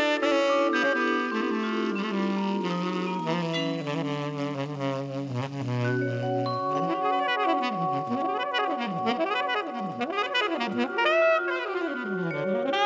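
Big band jazz recording with saxophone and brass: held horn chords over a bass line that steps downward, then from about halfway, sustained chords crossed by repeated swooping glides down and back up in pitch.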